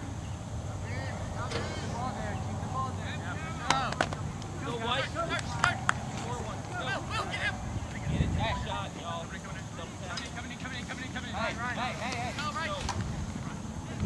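Outdoor soccer-game sound: distant players' shouts and calls come and go over a steady low background rumble. A few sharp thuds of the ball being kicked land around four and six seconds in.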